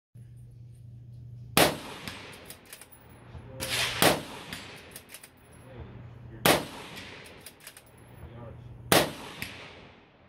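Bolt-action rifle fired four times, the shots evenly spaced about two and a half seconds apart, each with a short echoing tail. Between shots the bolt is worked, with light clicks of it being cycled to chamber the next round.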